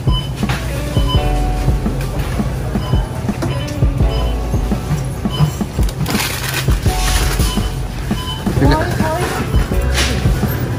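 Store background music playing over supermarket ambience: a low steady hum, scattered small clicks and knocks, and other shoppers' voices, one of them clearer near the end.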